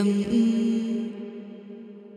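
Vedic Sanskrit chant in a woman's voice over a steady drone: the end of a sung line is held as one long note and fades away over the second half.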